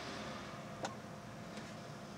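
A single sharp click a little under a second in and a much fainter one later, like a laptop trackpad button being pressed, over a faint steady hum of room tone.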